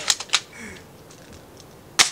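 A quick run of three sharp clicks or taps near the start, then quiet, then one sharp crack at the end.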